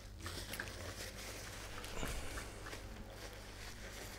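Faint room tone with a steady low hum and a few scattered faint knocks.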